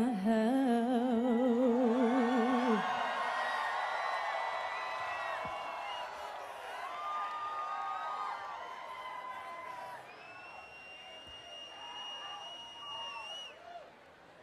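A woman's voice holds the song's final sung note with a wide vibrato, cutting off about three seconds in. Then a festival crowd cheers and screams, fading, with one long high-pitched scream held near the end.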